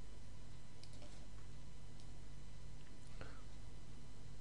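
A few faint computer mouse clicks, two close together about a second in and single ones near two and three seconds, over a steady low electrical hum.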